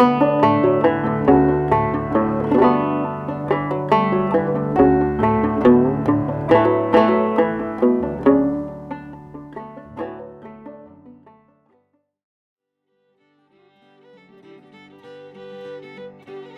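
Banjo tune, a run of quick plucked notes over steady low drone tones, fading out to silence about three-quarters of the way in. A quieter piece of music with longer held notes then fades in near the end.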